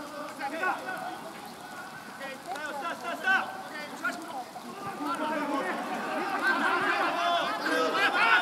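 Several men's voices shouting and calling over one another, the rugby players' calls around a ruck, growing louder and busier in the second half.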